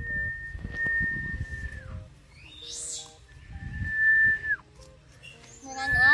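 Whistling: a high note held for about two seconds that slides down at its end, then a shorter one and a third, loudest one near the end, each falling off the same way, over faint background music.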